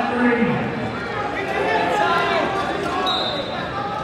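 Many overlapping voices of spectators and coaches in a large, echoing gymnasium during a wrestling bout, with a brief high steady tone about three seconds in.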